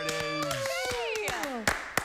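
Wordless, drawn-out admiring "ooh" from two voices, one lower that stops about a third of the way in and one that keeps falling in pitch until near the end. Scattered hand claps run through it, with a louder clap near the end.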